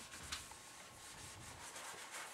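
Faint rubbing of a marker line being wiped off a whiteboard, with a small tap about a third of a second in.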